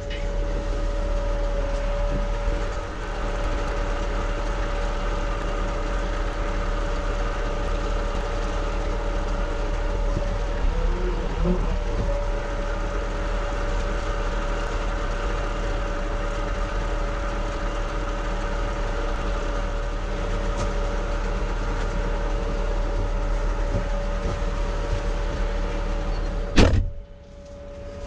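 Merlo 42.7 140 TurboFarmer telehandler's diesel engine idling steadily with a steady whine, heard inside the cab with the door open. Near the end the cab door shuts with a sharp knock and the engine sound drops much quieter.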